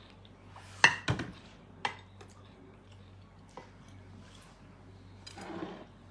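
Glasses and tableware clinking and knocking on a table: several short, sharp clinks, the loudest about a second in.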